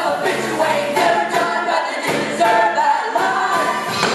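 Ensemble of voices singing a musical-theatre number over accompaniment, with a regular beat.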